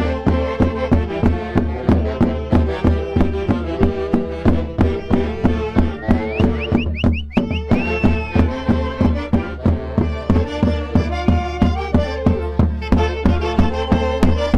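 Andean festive band of saxophones, violin and drum playing a lively dance tune over a steady quick beat of about three strikes a second. A brief run of short, high, rising whistle-like notes cuts across the music just past halfway.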